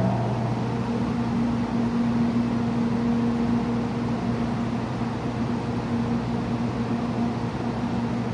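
Stationary 700 Series Shinkansen train humming at a platform: a steady electrical hum of a few fixed low tones under an even fan-like rush from its on-board equipment, with no change in pitch.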